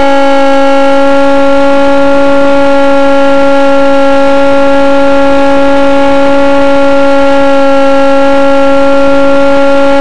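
Electric motor and propeller of a radio-controlled aircraft, heard loud and close through its onboard camera, running with a steady whine at nearly constant pitch.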